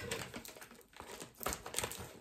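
Shipping package and its plastic wrapping rustling and crinkling as it is handled, with a few light clicks and taps near the end.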